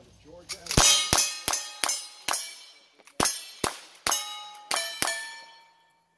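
About ten gunshots in quick succession, each followed by the clang and ring of a struck steel target. The shots come in two quick runs with a short pause between them.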